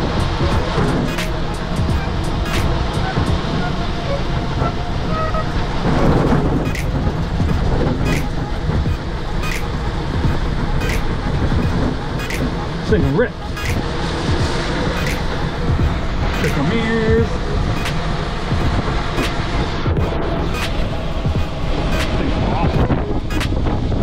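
Wind and road noise from an ELF electric recumbent trike travelling at speed, with background music that has a steady beat.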